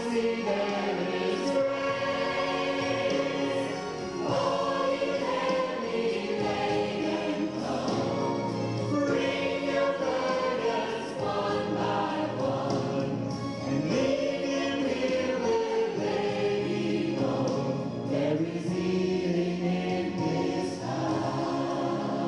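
Small gospel choir singing, a man singing lead over the group voices.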